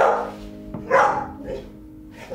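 A dog barks twice, about a second apart, over the song's last chord as it dies away.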